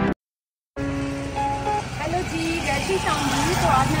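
Background music cuts off, followed by about half a second of silence. Then street ambience: steady road-traffic noise with people's voices over it.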